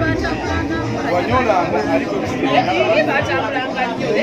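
Speech only: several people talking, a man's voice leading with others chatting around him.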